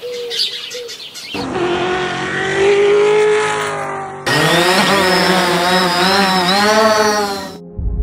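1966 Shelby GT350's 289 V8 revving hard as the car accelerates, its pitch rising and then dropping, then from about halfway a loud burnout: tyres squealing and hissing over the high-revving engine, cut off suddenly near the end.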